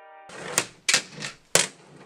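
Handboard being worked on a plastic folding table: the wheels roll with a rushing noise, and the board strikes the tabletop in four sharp clacks about a third of a second apart.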